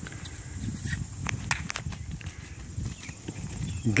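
Hooves of a filly and a mare moving over grass: dull, irregular thuds, with a few sharp clicks between one and two seconds in.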